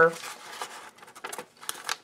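Scissors cutting through a brown kraft paper bag, with the stiff paper rustling and a few short, sharp snips in the second half.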